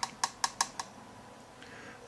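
A quick run of about five light, sharp clicks in the first second, then quiet.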